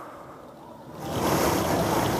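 Wind rushing against the microphone: an even, rushing noise that swells up about a second in after a quieter moment and then holds steady.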